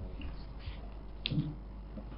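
Steady low room hum with one short, sharp click a little past the middle, followed by a brief low thump.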